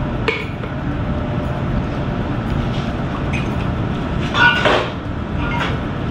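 Glass bottles and a stainless cocktail shaker clinking as a drink is poured and mixed, with a louder ringing clink about two-thirds of the way through, over a steady low background rumble.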